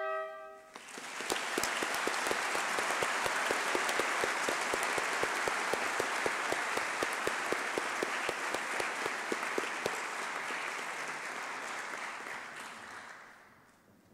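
A brass fanfare's last chord stops in the first second, then audience applause follows, with one close clapper's claps standing out at about four a second. The applause fades out over the last two seconds.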